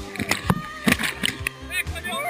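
Background music: a song with vocals and several sharp hits.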